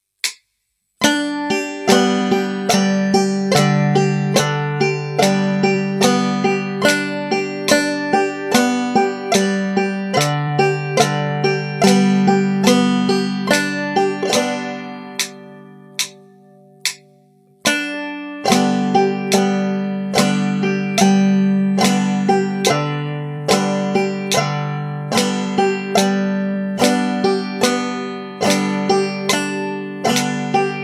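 Five-string banjo played clawhammer style, picking slow, even warm-up patterns in time with a metronome's clicks. About halfway through the picking stops and a chord rings out and fades for a couple of seconds before the pattern starts again.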